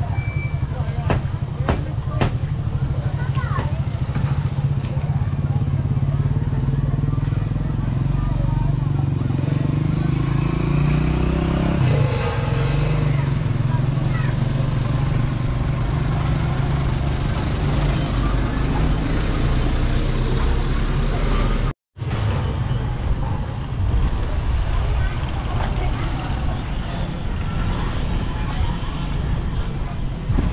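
Outdoor street ambience with background voices and a motor vehicle engine running close by, its pitch rising for a few seconds and then falling off about twelve seconds in. The sound cuts out completely for a moment about three-quarters of the way through.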